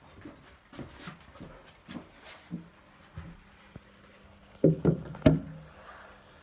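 Scattered light knocks and taps, then a quick cluster of much louder knocks about five seconds in, over a faint steady hum that starts about halfway through.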